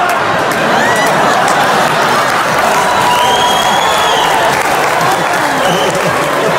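Large audience laughing and applauding in a theatre, a steady wash of claps and voices.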